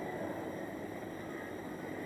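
Quiet, steady background noise with a faint hiss on a broadcast interview's audio line, with no distinct event.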